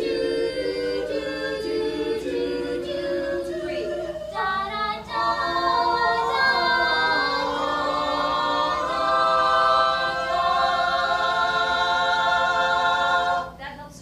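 A stage musical's cast singing together in harmony, with no instruments heard. The voices move through several chords, then hold a final chord for several seconds before cutting off together near the end.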